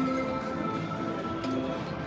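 Electronic music from a Jeopardy slot machine: a few steady held notes.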